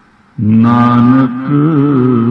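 A man chanting Gurbani in the slow, sing-song recitation used for reading the Hukamnama. His voice comes in about half a second in after a short pause and holds long pitched notes.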